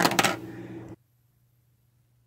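A few quick, sharp clicks and clinks as 3D-printed plastic lathe chuck jaws with metal inserts are handled, over a faint low hum. The sound then drops out completely about a second in, where the audio is cut.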